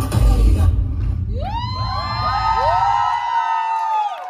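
Dance music with a heavy beat stops about a second in, and a crowd of guests breaks into cheering, several voices rising into long overlapping whoops.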